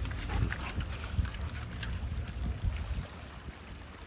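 Wind rumbling unevenly on the microphone, over small lake waves lapping on a pebble shore.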